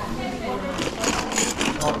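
Indistinct voices talking, with plastic carrier-bag rustling and light knocks of small boxed items being packed into the bag, mostly in the second half.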